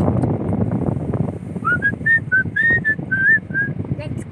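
A person whistling a short tune of about nine quick notes, starting about one and a half seconds in and ending shortly before the end. Under it runs the low rumble of a car cabin with the car moving.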